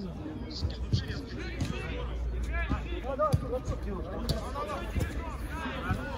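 Indistinct shouts and calls of players in a football game, with several sharp ball kicks or bounces, over a steady low wind rumble on the microphone.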